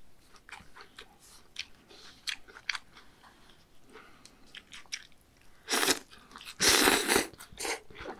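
Close-miked eating of bibimmyeon (spicy cold noodles) with raw beef. Soft wet chewing and small mouth clicks come first, then two louder, longer slurping sounds about six and seven seconds in as noodle strands are sucked in.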